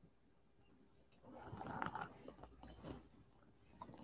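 Scissors cutting stabilizer on a bathing suit: a soft rustle of material with a few small snips, starting about a second in and lasting a couple of seconds.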